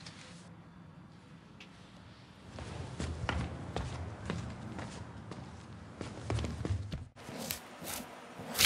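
Footsteps on an indoor floor for a few seconds, then, after a sudden drop near the end, a utility knife slitting the packing tape on a cardboard box in two quick strokes.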